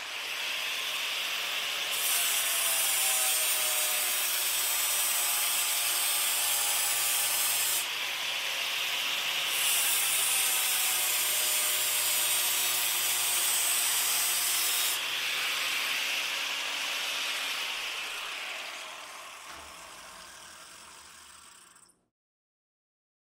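Angle grinder running with an abrasive disc against the steel of a bayonet blade, grinding hiss in two long passes, the second starting about halfway through. The motor winds down near the end.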